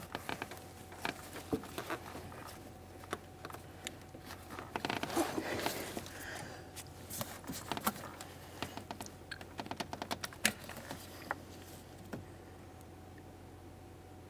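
Faint, scattered small clicks and taps of gloved hands handling a plastic electrical connector among rubber engine-bay hoses, with a denser stretch of rustling about five seconds in.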